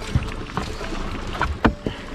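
Wind buffeting the microphone in a small boat on open water, with a few dull knocks, the strongest about a second and a half in.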